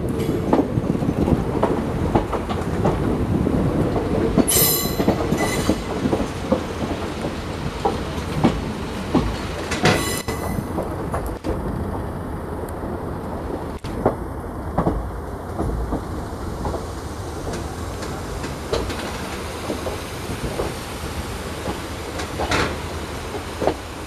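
Passenger train running along the track: a steady rumble with wheels clicking over the rail joints, and two brief high-pitched bursts about five and ten seconds in.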